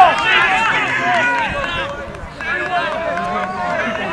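Many voices of rugby players and sideline spectators shouting and calling out over one another during open play, with one long drawn-out shout about three seconds in.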